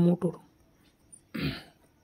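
A person clearing their throat once, a short rough burst about one and a half seconds in, after the tail of a spoken word.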